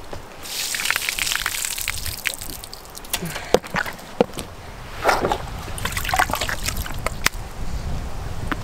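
Water splashing out of a rubber boot onto pavement as it is emptied, with sharp knocks and scuffs as the boot and its insole are handled and dropped.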